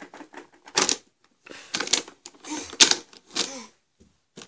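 Hard plastic toy SUV being lifted, moved and set down by hand, rattling and knocking in irregular bursts of clatter, loudest about a second in and again near the three-second mark.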